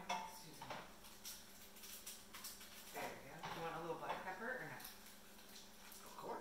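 Light clinks and knocks of a utensil against a pan on the stove, one sharp click near the start. About three seconds in comes a brief voice-like sound lasting a second or so.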